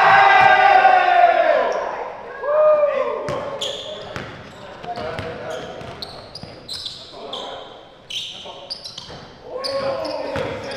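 Players shouting loudly in an echoing gym right after a basket, with long, falling yells in the first couple of seconds. Then the pickup basketball game goes on: the ball bounces and sneakers make short, sharp squeaks on the hardwood court.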